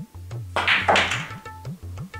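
Pool draw shot, the cue struck low on the cue ball: a loud clack of the cue and balls colliding about half a second in, over background tabla music.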